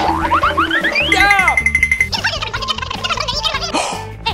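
Cartoon comedy sound effects over background music with a steady beat: a quick run of rising, whistle-like pitch sweeps and boings in the first second and a half.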